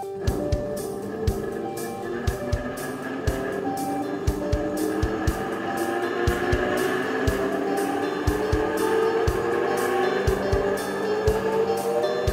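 A large bandsaw with big spoked wheels switched on and slowly coming up to speed, its hum rising steadily in pitch. Background music with a beat plays over it.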